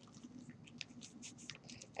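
Faint crinkling and light scattered ticks of a plastic zip-top bag of wet clay paste being squished and kneaded by hand on newspaper, working the dry powder into the water.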